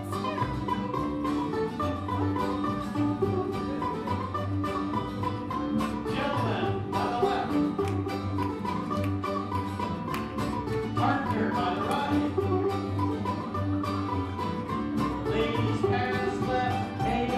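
Live old-time string band playing a contra dance tune: banjo, guitar, mandolin and upright bass over a steady, even beat.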